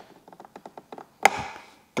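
Plastic pry tool levering a Hertz 6x9 speaker's flange past the edge of a plastic speaker-lid cut kit: a run of small quick clicks, then one sharp snap just over a second in as the speaker drops into place.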